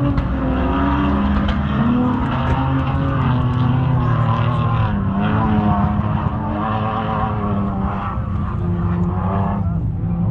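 An off-road vehicle's engine running out of shot, its pitch climbing just before and then holding high with small rises and falls as the throttle is worked.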